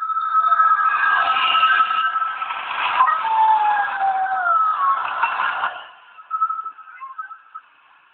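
Opening music or sound effect with a thin, tinny tone: held tones and a few sliding pitches that fade out about six seconds in, leaving faint scraps of sound.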